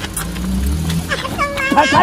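Low rumble of a car engine running for about the first second, followed by a man's voice calling out near the end.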